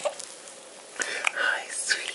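Newborn baby's soft, breathy fussing sounds starting about a second in, as she begins to cry.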